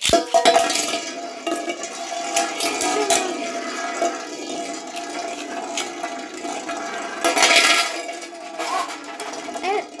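Two Beyblade spinning tops launched into a large aluminium pan, spinning and grinding against the metal with a steady ringing hum and rattling clinks. About seven and a half seconds in they clash loudly, and one top is knocked out ("bursted").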